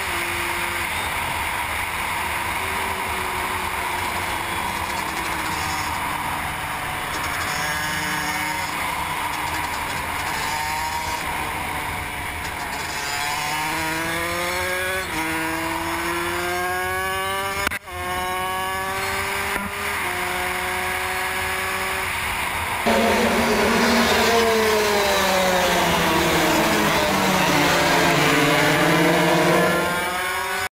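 125cc racing motorcycles at full throttle on a circuit. The engines climb in pitch and drop back again and again as the riders shift up through the gears. From about three quarters of the way in, the sound is louder and closer, with engines swelling and falling in pitch as bikes pass.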